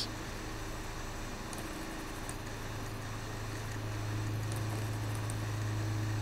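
Steady low electrical hum with faint hiss: the background tone of the recording, with no sounds of activity on top.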